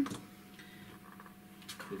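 Faint clicks and light taps of craft supplies being handled on a table. Two sharper clicks come near the end.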